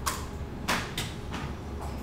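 About five short, sharp clicks and knocks in two seconds, the loudest about two thirds of a second in, over a steady low hum.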